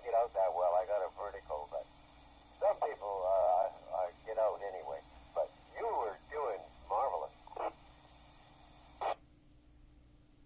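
A ham operator's voice received over a QYT KT-WP12 mobile VHF radio's speaker, thin and narrow like radio audio; the talk stops about three quarters of the way in. A short sharp burst near the end as the transmission drops.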